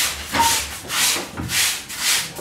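Laundry being scrubbed by hand in a plastic washbasin: wet fabric rubbed against itself in repeated strokes, about two a second.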